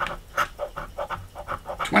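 A coin scratching the coating off a scratch-off lottery ticket in quick, short back-and-forth strokes.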